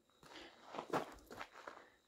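Footsteps of a hiker walking on the ground: about four steps, the second one, near the middle, the loudest.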